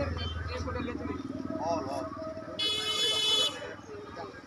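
A single horn blast lasting just under a second, a little past the middle, over the chatter of people standing around. A low hum fades out about a second in.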